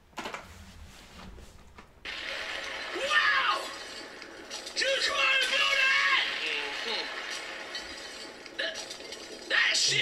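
Speech from a video being played back, starting abruptly about two seconds in over a steady hiss, after a couple of faint clicks.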